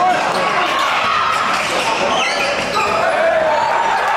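Basketball bouncing on a hardwood gym floor during live play, over a steady murmur of crowd voices echoing in the gym.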